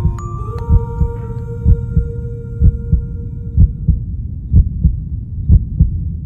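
Heartbeat sound effect: a low double thump (lub-dub) about once a second, under sustained ambient music notes that fade out about four seconds in.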